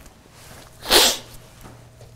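A man clears his throat once: a single short, harsh burst about a second in.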